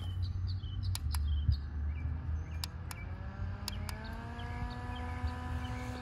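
Small battery-operated clip-on fan running, its motor hum rising in pitch about three seconds in and then holding steady as it speeds up. A few sharp clicks come in the first three seconds.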